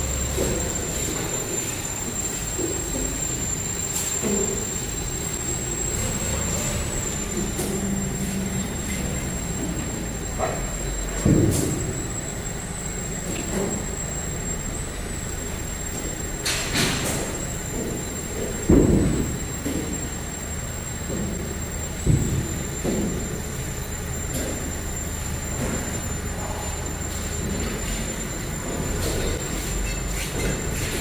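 Steady industrial machinery noise with a thin, high whine running through it, broken by four or five sharp metallic knocks. The loudest knock comes about two-thirds of the way in.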